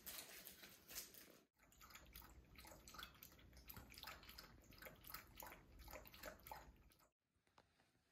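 A dog lapping water from a bowl: a quick, fairly even run of small wet laps and splashes, lasting about five and a half seconds from about a second and a half in. Before that there is a short stretch of soft scuffling from the dog playing with plush toys.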